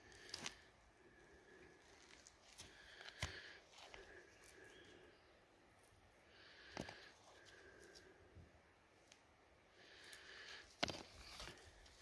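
Near silence, broken by a few faint clicks and rustles as gloved hands handle and turn over chunks of vein rock.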